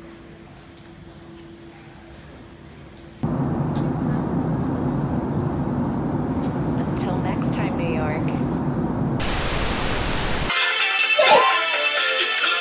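Airliner cabin noise: a loud, steady engine and air rumble that cuts in suddenly a few seconds in, after a quieter stretch with a faint hum. A brief burst of hiss comes after the rumble, and music starts near the end.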